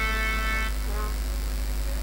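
A performer's voice through the stage microphone holds a long sung note that stops just under a second in, and a short sliding vocal sound follows, over a steady low hum of the sound system.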